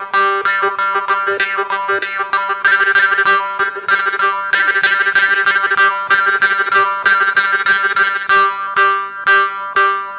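Morsing, the South Indian metal jaw harp, plucked in a fast rhythmic pattern, several twangs a second, over one steady drone. The player's mouth shapes a shifting melody in the ringing overtones.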